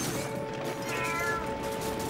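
Background cartoon music with long held notes, and about a second in a short cartoon cat's meow that rises and falls in pitch.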